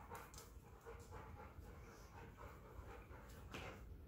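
Faint panting of a dog, with a few soft irregular clicks, over a very quiet room.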